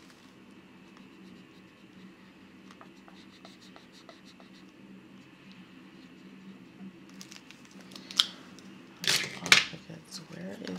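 Marker pen scratching faintly on a paper tracker as a box is coloured in, over a low steady hum. Near the end, a louder rustle and crinkle of paper and plastic as the binder and bills are handled.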